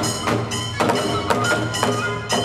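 Kagura accompaniment: drum and small hand cymbals struck together about twice a second, each stroke leaving a metallic ring, under a held flute melody.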